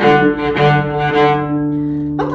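Cello played staccato on the up bow: short detached notes about two a second, the last one held and left ringing near the end.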